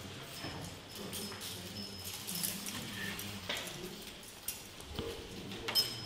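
Handcuffs and a restraint chain clicking and clinking as a guard unlocks them from a prisoner's wrists: a handful of sharp, irregular metal clicks over a low room murmur, the loudest just before the end.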